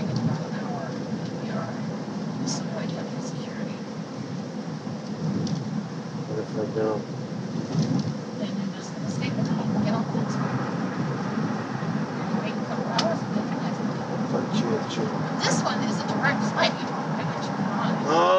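Steady low rumble of road and engine noise inside a moving car's cabin, with scattered light clicks and knocks and faint, indistinct voices at times.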